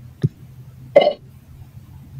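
A single sharp click, then about a second in a short spoken syllable ('All'), over a faint low hum.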